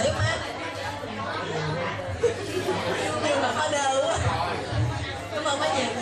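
Several people talking at once in a large room, overlapping voices and chatter, with one short knock about two seconds in.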